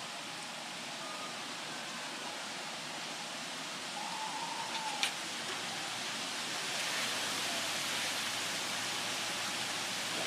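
Steady outdoor background hiss that grows a little louder about seven seconds in, with a faint short whistle near the middle and a single sharp tick about five seconds in.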